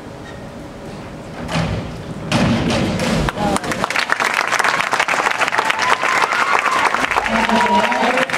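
A diving springboard thuds under the diver's hurdle and takeoff about two seconds in. Then loud applause and cheering from the spectators, with the splash of her entry into the pool under it.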